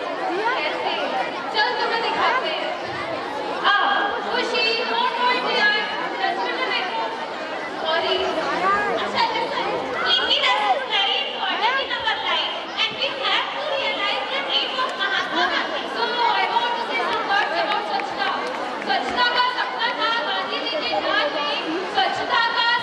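Women's voices speaking through microphones and a PA, over a background of crowd chatter.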